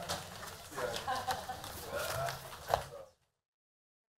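Indistinct voices and small knocks and clicks of people in a meeting room just after adjournment. The sound cuts off abruptly about three seconds in.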